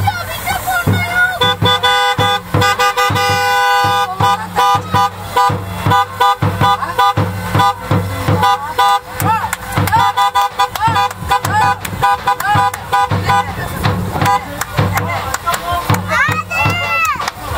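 Festive music with a steady drum beat, mixed with car horns honking in short repeated blasts from a celebratory convoy.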